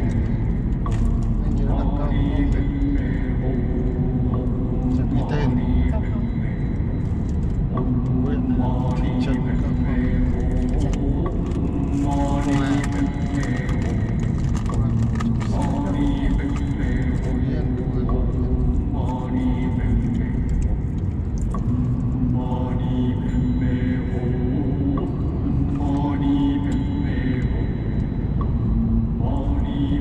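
A person's voice with long held notes, coming and going every few seconds, over a steady low rumble of a car driving.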